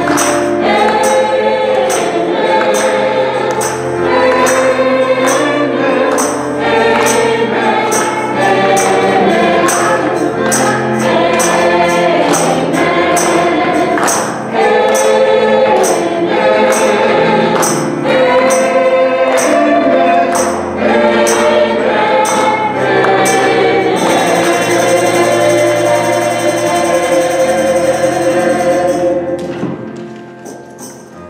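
Gospel choir singing with a tambourine keeping a steady beat of about two strikes a second. About six seconds before the end the tambourine stops and the accompaniment holds on, fading out at the very end.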